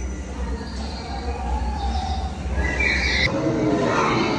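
Recorded animal sound effects from a walk-through funhouse's soundtrack, over a steady low hum that cuts off suddenly a little over three seconds in.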